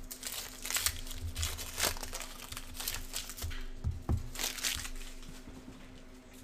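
Plastic wrapper of a trading-card pack crinkling as it is unwrapped and handled: a run of short rustles with a few soft knocks, dying away near the end.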